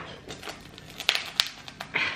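Crispy bread roll being torn open by hand, its crust giving a few sharp crackles about a second in.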